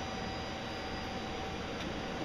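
Steady background hiss with a faint hum and a thin steady whine: workshop room tone, with the engine not yet running.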